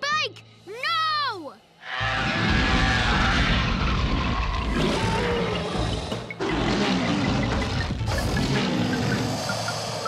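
Two short, high cries that rise and fall in pitch, then from about two seconds in loud, dramatic cartoon score with heavy low rumbling that runs on without a break.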